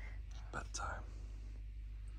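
Faint whispering: a couple of soft breathy words about half a second in, over a low steady hum.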